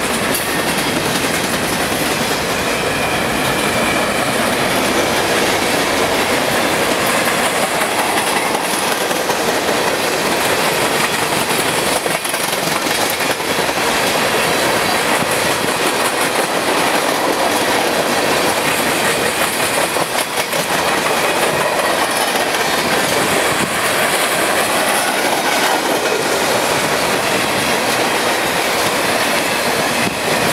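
A CN freight train's cars rolling past at a steady speed: boxcars, then tank cars. The steel wheels give a continuous clickety-clack over the rail joints.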